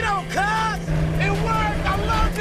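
A man laughing and whooping inside a moving car, his voice rising and falling in pitch over the steady drone of the 1970 Dodge Challenger R/T's engine.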